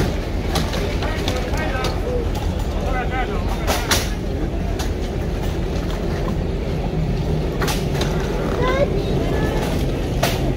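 Crowd of train passengers chattering and jostling at a carriage door over a steady low rumble, with a few sharp knocks, around four seconds in and again near eight seconds.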